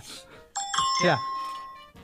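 Electronic two-note chime from a phone game app, the signal that a word was guessed right: steady ringing tones that start suddenly about half a second in and fade out over about a second and a half.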